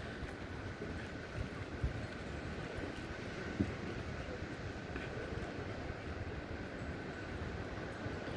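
Steady outdoor background noise: a low, unsteady rumble with a faint steady high tone above it.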